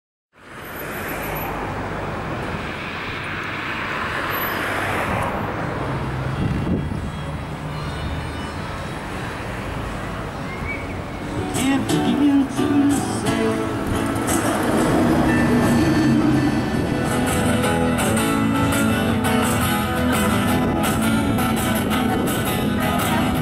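Steady outdoor background noise with a low rumble, then music comes in about halfway through and carries on, growing louder.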